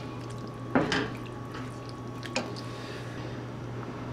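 A spoon stirring thick, wet tomato-and-ground-turkey chili in a cast-iron skillet, making soft squelching sounds with a couple of faint clicks. A steady low hum runs underneath.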